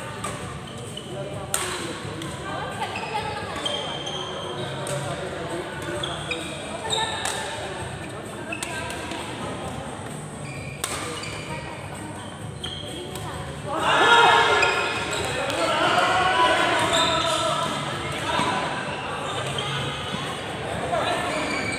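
Badminton rally in a large sports hall: racket strikes on the shuttlecock every second or two, echoing in the hall. About 14 seconds in, a loud burst of shouting and voices breaks out as the rally ends.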